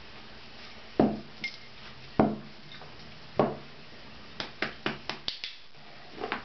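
Three dull thumps about a second apart, each with a short low ring, then a quick run of about six light clicks near the end.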